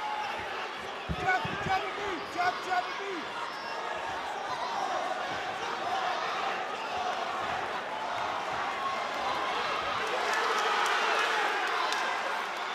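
About five dull thuds from the fighters in a boxing ring, in two quick clusters a second or two in, over a crowd of spectators shouting and calling; the crowd noise swells near the end.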